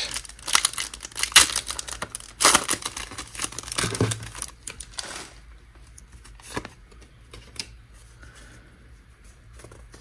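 Foil wrapper of a Pokémon card booster pack crinkling and tearing as it is ripped open, in a run of sharp rustles over about the first five seconds. After that there are only faint handling clicks as the cards are taken out.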